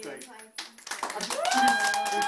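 Hands clapping rapidly, starting about half a second in. Partway through, a voice rises into one long held note over the applause.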